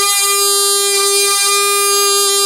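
A pungi (magudi), the snake charmer's gourd pipe, played with one steady, held reedy note and a brief break about a second and a half in.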